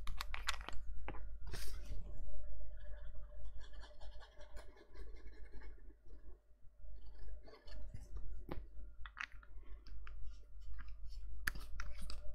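Card stock being handled, folded and set down on a tabletop: scattered light clicks and taps with some paper rustling.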